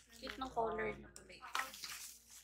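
A woman's voice briefly, over the rustling and scraping of a white cardboard box being opened by hand, with a few small clicks of the flaps.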